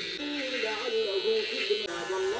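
Cordless hair trimmer buzzing steadily as it lines up the back of the neck, cutting off just before the end. A song with a singing voice plays underneath.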